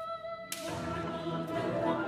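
Choral-orchestral music: a boy treble's held sung note over strings gives way, about half a second in, to the choir and orchestra entering together with a sharp attack and carrying on as a full ensemble.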